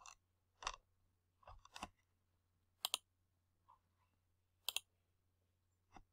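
Computer mouse button clicks: a handful of short, faint clicks spread over a few seconds, two of them in quick pairs, with near silence between.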